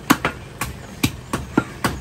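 Butcher's cleaver chopping beef on a round wooden chopping block: sharp chops at an uneven pace, about seven in two seconds.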